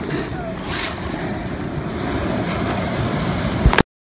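Shallow surf washing and churning around the recorder, with wind buffeting the microphone. A low thump comes near the end, and the sound then cuts off abruptly.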